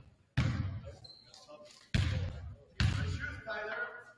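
A basketball bounced three times on a hardwood gym floor, each bounce echoing in the hall: the shooter's dribbles before a free throw.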